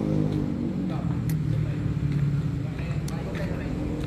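A car engine idling steadily, with two brief clicks.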